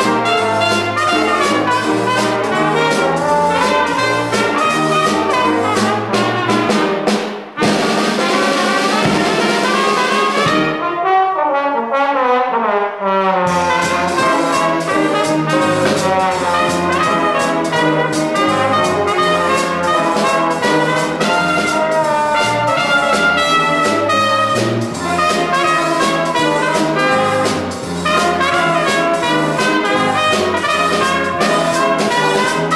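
Live Dixieland-style jazz band playing: trumpet, trombone and saxophone over guitar, bass and drum kit. A bit after ten seconds in, the bass and drums drop out for about three seconds and the horns play alone, then the full band comes back in.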